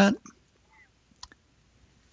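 A single computer mouse click, a short sharp press-and-release tick a little over a second in, clicking the Import button.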